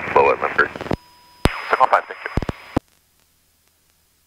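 Air traffic control radio transmission on the aircraft's intercom: a voice over the radio broken by squelch clicks, with a brief steady tone about a second in. It cuts off abruptly near the end to near silence.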